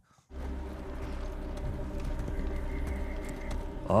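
A film soundtrack playing a steady low drone of layered sustained tones, which starts just after a brief silence.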